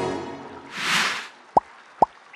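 Cartoon sound effects: a soft rushing swell about a second in, then two quick plops falling in pitch like water drops, about half a second apart.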